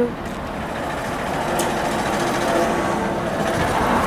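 Road traffic on a city street: a motor vehicle passing, its noise growing gradually louder, with a faint steady hum in the middle.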